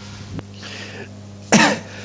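A person coughs once, briefly, about one and a half seconds in, over a low steady hum.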